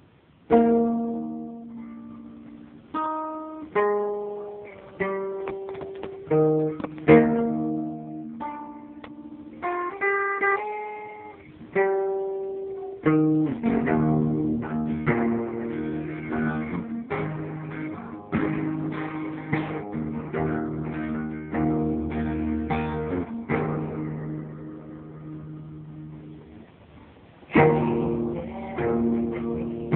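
Acoustic guitar played alone: single plucked notes and chords ringing out one after another, then fuller chords played continuously from about thirteen seconds in.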